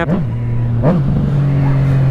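Yamaha MT motorcycle engine running at a steady, low pitch while the bike rolls along, heard from the rider's helmet camera with wind rumble underneath.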